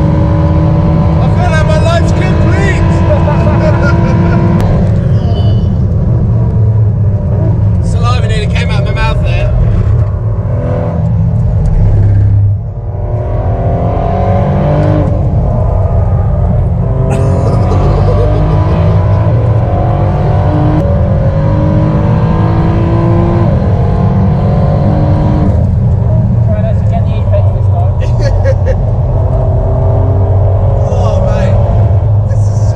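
Ford GT's twin-turbo V6 heard from inside the cabin at full race pace, its pitch climbing again and again as it is driven hard up through the gears. The engine drops away briefly a little before halfway, then pulls hard through the gears again.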